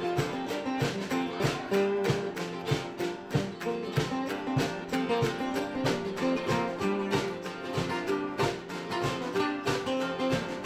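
Acoustic guitars strummed together in a steady rhythm, chords ringing on each stroke.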